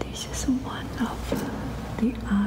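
Soft whispered speech: a few short, hesitant voice fragments with breathy hiss and no clear words.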